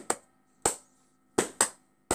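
Hand claps: four sharp single claps in an uneven rhythm, two of them close together about one and a half seconds in.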